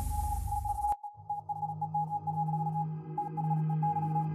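Live electronic music from synthesizers: a full mix with deep bass cuts out about a second in, leaving one high steady tone that flickers in short pulses, like a sonar or warning beep, over a low drone.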